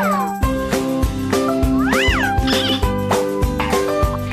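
Upbeat show-bumper music jingle: a bass beat kicks in about half a second in, and a sound swoops up and back down in pitch about two seconds in.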